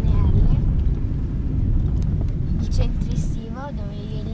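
Low, steady rumble of a car driving, heard from inside the cabin, with two sharp clicks about two and three seconds in.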